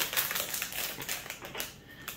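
Foil blind-bag wrapper crinkling as it is handled, a fast irregular crackle that thins out and fades near the end.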